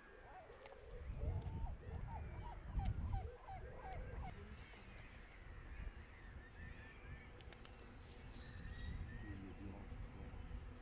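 Birds calling outdoors: a quick run of short honking calls in the first few seconds over a low rumble, then thin, very high chirps from smaller birds toward the end.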